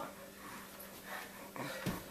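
Faint breathing and movement of people exercising, with a soft thump of a foot landing on the carpet near the end.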